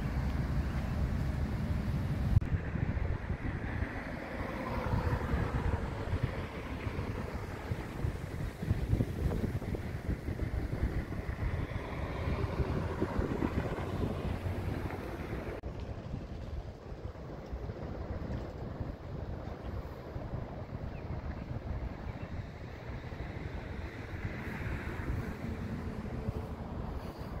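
City street ambience: traffic passing with wind rumbling on the microphone. The background changes suddenly about two and a half seconds in and again about halfway through.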